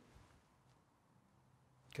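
Near silence: faint room tone in a pause between speech.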